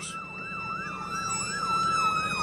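Emergency vehicle siren in a fast yelp, rising and falling about three times a second over a steady tone that sinks slightly in pitch near the end, growing louder.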